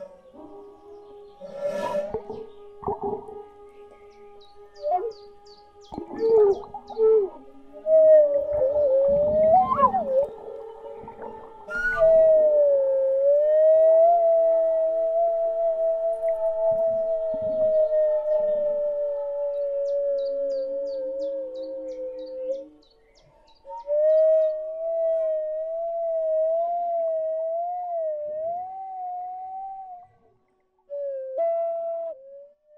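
Flute playing a long held note that slides and wavers slowly in pitch, in a like a whale-song manner, with scattered knocks and clicks through the first dozen seconds. The tone breaks off briefly about three-quarters of the way through, then returns with a slow wobble.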